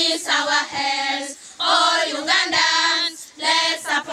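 A group of schoolchildren singing a song about hygiene together, in phrases of held notes.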